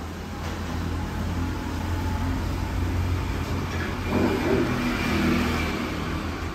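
A motor vehicle passing close by: a low engine rumble that swells to its loudest about four to five seconds in, then eases off.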